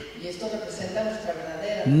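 Faint speech: a quieter voice talking softly, well below the level of the main speaker.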